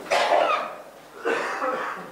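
A person coughing twice, the coughs about a second apart.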